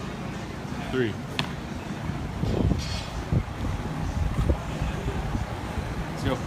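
Steel pull-up rig clanking sharply once about a second and a half in as the athlete swings on the bar, then dull thumps as she drops off and lands on the rubber gym floor, over a steady low rumble.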